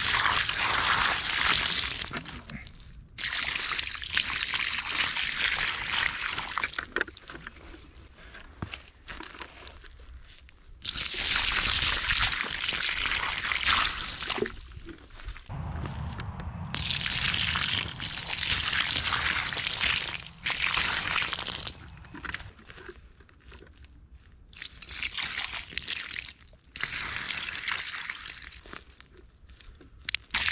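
Water poured from above onto toy monster trucks sitting in mud, splashing off the plastic and into puddled mud, in repeated pours of a few seconds each with quieter gaps between.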